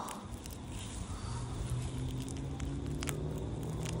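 Grass and roots crackling and rustling as a clump of grass is worked loose from a crack in concrete, with a few sharp ticks near the end. A steady low hum runs underneath from about a second in.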